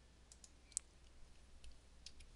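A few faint, separate computer keyboard keystroke clicks, irregularly spaced, one of them sharper than the rest.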